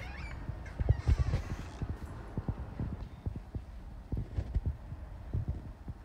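Footsteps on a hardwood floor: irregular low thuds, about two a second, loudest about a second in.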